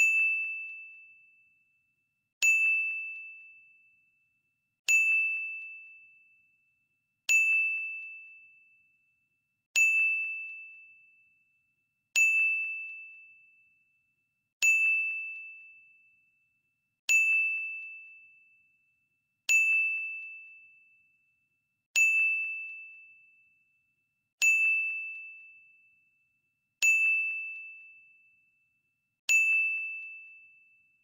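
Countdown timer sound effect: a single high bell-like ding repeated evenly about every two and a half seconds, each one struck sharply and fading away over about two seconds.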